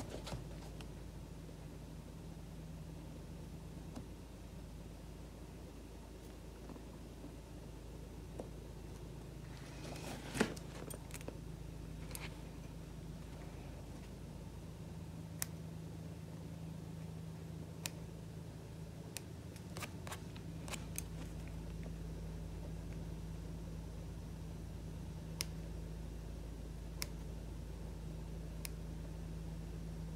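Small scissors snipping loose threads from a sneaker's stitching: a few scattered sharp clicks, with one louder handling sound about ten seconds in, over a steady low hum.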